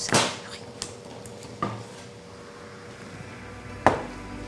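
A wooden stick pounding soft mochi dough in a ceramic bowl: one heavy stroke at the start, then a few light knocks, and a sharp knock near the end.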